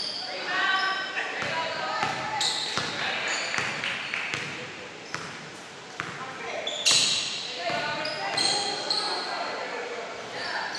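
A basketball bouncing repeatedly on a hardwood gym floor during play, with players' shouting voices, all echoing in a large hall.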